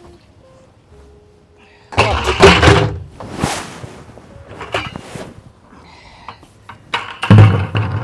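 Plastic buckets scraping and knocking against the inside wall of a tall planter pot in irregular bursts, with a heavy low thump near the end.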